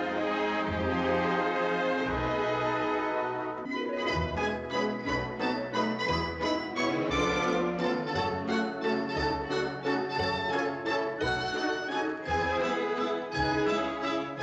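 Orchestral film score. Sustained full-orchestra chords change about four seconds in to a lighter rhythmic passage of short, detached repeated notes over a pulsing bass.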